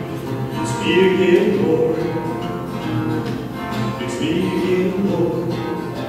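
Acoustic guitar played as accompaniment, with a man singing over it.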